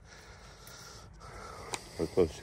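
Quiet open-air background with faint rustling of hands as a small coin is passed from one hand to the other, and one light click near the end.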